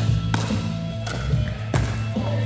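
Pickleball paddles striking a plastic ball during a rally, a few sharp pops, over background music with a steady bass line.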